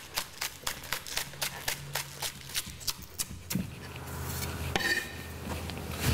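A knife chopping spring onions on a wooden chopping board, with quick regular cuts of about four a second that stop a little past halfway.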